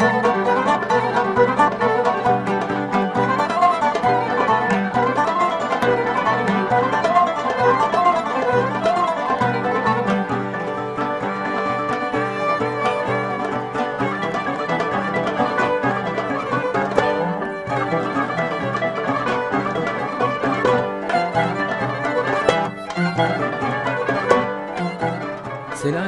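Live traditional ensemble music: a kanun plucked in quick runs, with violin, accordion and plucked lutes, and a man singing along.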